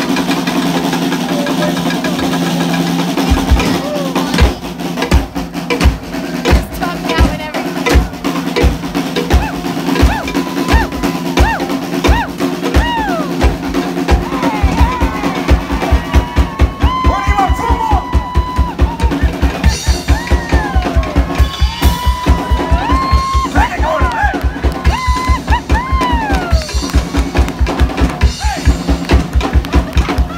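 Live band music driven by a drum kit: a few seconds in, the bass drum starts hitting in a broken pattern, then from about halfway it settles into a fast, steady beat.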